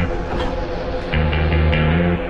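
Music with a rhythmic riff of short, repeated low bass notes and chords.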